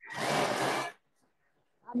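Thermomix blades spinning up at speed 10, a loud whirring noise for about a second that then cuts off, flinging sticky dough off the blade onto the wall of the mixing bowl.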